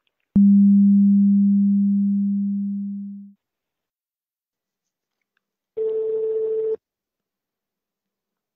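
Telephone line after the call ends: a click, then a low steady tone fading away over about three seconds. A few seconds later comes one higher telephone tone lasting about a second.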